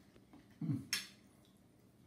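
A man's closed-mouth "mm" of enjoyment while eating, falling in pitch, followed by a short sharp click.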